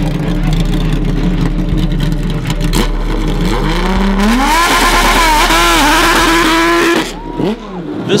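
Dallara Formula 1 car's engine idling steadily, then revving up about three and a half seconds in and running loud and high-pitched as the car pulls away, its pitch rising and dipping. The sound drops away suddenly about seven seconds in.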